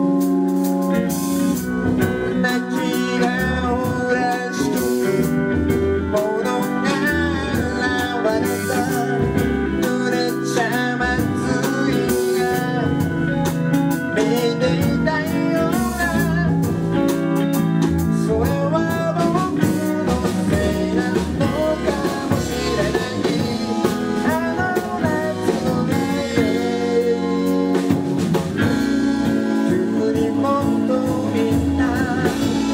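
Live band of organ, drums, electric bass and electric guitar playing a song, with held organ chords at the start and near the end and a moving lead line over the groove in between.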